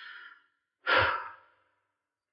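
A man's audible sigh: one breath out about a second in, fading over about half a second.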